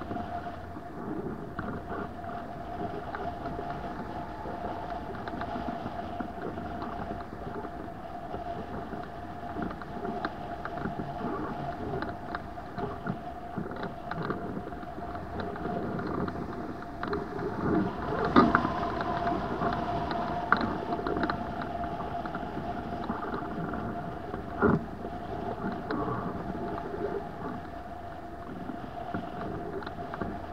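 Airflow rushing past a hang glider in flight and buffeting the microphone, unsteady in choppy air, with a steady tone held throughout. A few sharp knocks stand out, the loudest about eighteen seconds in.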